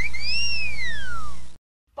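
A comic whistle sound effect: a few quick rising chirps, then one long tone that swoops up and slowly falls, over a steady low hum. It cuts off abruptly near the end.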